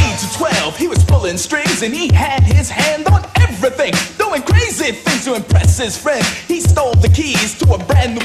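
Hip hop track playing: a rapper delivering verses over a heavy kick-drum beat.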